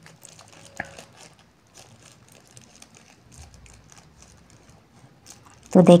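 Blended onion and spice paste sputtering and crackling faintly in hot oil under a glass pan lid, with one sharper click about a second in.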